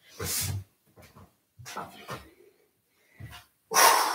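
A man's short, separate breaths and soft effort sounds as he gets down from standing to lying on his back on an exercise mat, with a louder one near the end.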